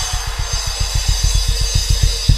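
Drum kit playing a fast, even run of low drum strokes, about eight a second, under ringing cymbals.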